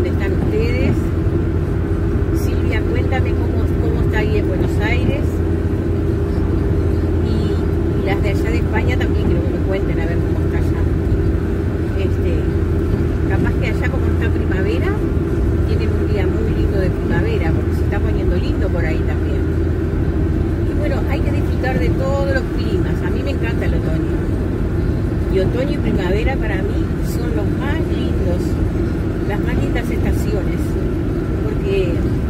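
Steady road and engine noise inside the cabin of a minivan travelling at highway speed, a constant low drone.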